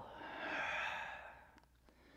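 A man's long, audible exhale, a full breath out that swells and then fades away over about a second and a half.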